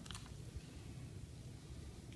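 Quiet room with faint handling sounds of kinesiology tape being laid and pressed onto skin, with a couple of soft clicks just at the start.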